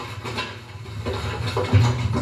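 Clatter of plates and chairs at a dining table: scattered light knocks over a low steady hum that swells near the end, heard through a television's speaker.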